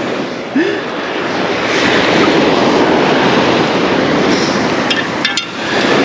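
Surf breaking and washing up the beach: a steady rushing noise, with a few sharp clicks a little after five seconds in.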